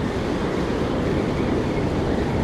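Steady rush of breaking ocean surf, with wind on the microphone.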